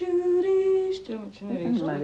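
A woman's unaccompanied voice holding one long sung note, which breaks off about a second in, giving way to talk.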